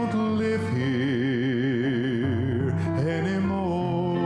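Man singing a gospel solo into a microphone over piano accompaniment. About a second in he holds one long note with wide vibrato, then moves to a new note near the end.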